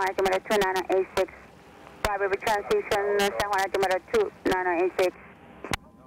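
Speech over the cockpit radio and intercom, thin-sounding and cut by frequent sharp clicks, with two short pauses, about a second in and near the end.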